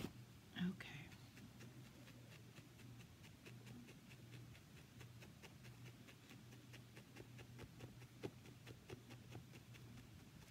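Felting needle repeatedly stabbing through wool roving into a foam pad: faint, rapid ticks, several a second, over a low steady hum. A brief whispered vocal sound comes about half a second in and is the loudest thing heard.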